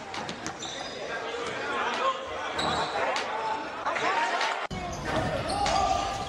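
Live basketball game sound in a gym: a ball bouncing on the court and indistinct voices of players and spectators, echoing in the hall. The sound changes abruptly about five seconds in, to a different game's noise.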